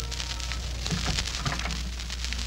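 Surface crackle and hiss of an old 1940s radio transcription recording, with a steady low hum and scattered faint clicks.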